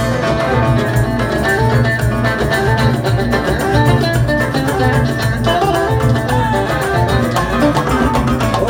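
Two ouds playing an instrumental melody passage in Yemeni jalsah style, with electric bass guitar underneath and a steady beat.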